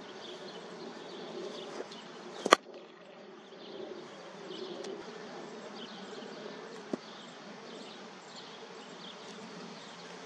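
A single sharp crack about two and a half seconds in, a cricket bat striking the ball, with a smaller knock later, over the steady buzzing of insects.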